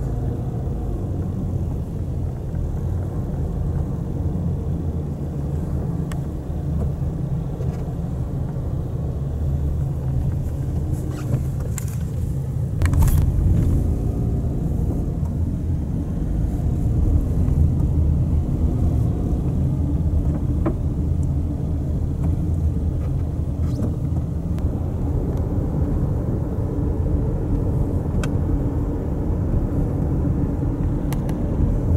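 A car's engine and road noise: a steady low rumble while driving, with a brief sharp click about halfway through.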